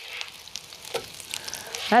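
Corn fritters sizzling in hot oil in a nonstick electric skillet. The hiss picks up at the start as a plastic spatula slides under a fritter and lifts it, with a few small clicks and scrapes.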